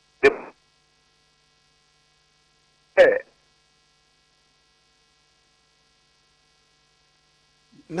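A faint, steady electrical hum on an otherwise quiet line, broken twice by a brief voice fragment: one just after the start, thin as over a telephone line, and one short word about three seconds in.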